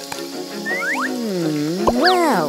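Cartoon sound effects over background music: quick rising whistle-like slides about a second in, then a low, swooping, croaky voice-like sound that dips and climbs again near the end.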